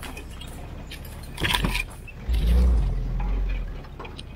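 Open military-style jeep crawling over a rocky forest track: a steady low engine rumble, a brief clatter about a second and a half in, then a heavier rumble for about a second and a half.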